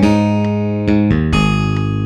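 Instrumental music led by a plucked bass line: three notes struck about half a second apart, each held and ringing.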